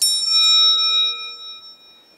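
A bell-like public-address chime struck once, its tones ringing and fading away over about two seconds, sounding the start of a paging announcement.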